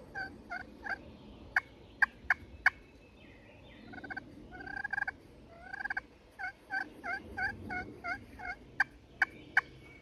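Turkey pot call worked with a striker, imitating a hen: runs of soft yelps about three a second, broken twice by groups of sharp, loud clucks or cutts.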